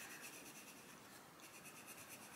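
Castle Arts Gold coloured pencil scratching faintly on paper in light shading strokes.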